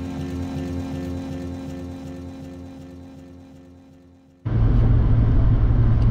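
Background music with sustained chords fading out, then about four and a half seconds in an abrupt cut to the steady low drone of a Chevy 2500HD Duramax diesel pickup driving at road speed, heard from inside the cab.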